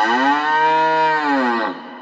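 A single long cow moo, rising and then falling in pitch, that breaks off about one and a half seconds in and trails away in an echo.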